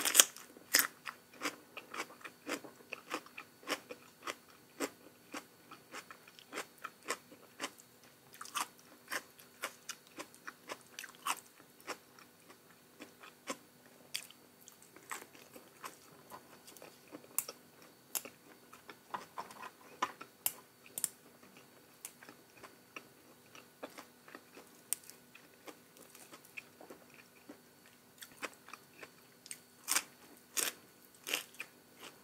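Close-miked eating sounds: a person chewing and crunching crisp food, a rapid, irregular run of sharp crunches, the loudest right at the start. A faint steady hum sits underneath.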